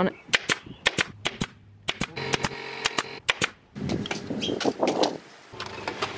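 Corded electric staple gun firing a quick run of about a dozen sharp snaps, driving staples through landscape fabric into the wooden frame of a raised bed. Near the end, a rushing, scraping noise of soil sliding out of a tipped wheelbarrow.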